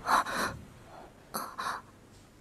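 A person's short, breathy gasps, in two quick pairs about a second apart.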